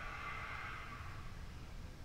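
A long, soft breath out through the mouth, an audible yoga exhale into a forward fold, fading away after about a second and a half. A low background rumble runs under it.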